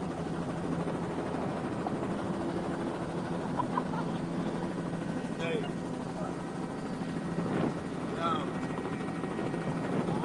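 Helicopter engine and rotor drone heard inside the cabin, a steady hum at an even level with a few fixed tones.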